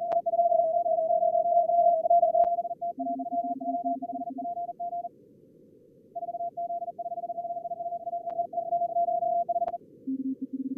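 Fast Morse code (CW) tones from a simulated contest pile-up on ham radio SO2R practice software, over receiver hiss. A higher-pitched stream keys most of the time, breaking off for about a second midway. A lower-pitched stream keys briefly about three seconds in. A few sharp clicks cut through.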